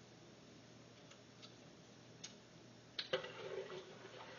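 A quiet kitchen with a faint steady hum and a few small, sharp clicks spaced about a second apart. Near the end comes a louder click and a short 'uh' from a woman's voice.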